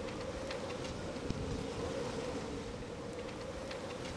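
Strong wind around a sailboat at anchor, heard from inside the cabin: a steady hiss with a constant hum and a few faint clicks.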